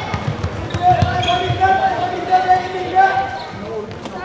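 Handball play in a large sports hall: thuds of the ball and players' feet on the hall floor, with players shouting calls over them.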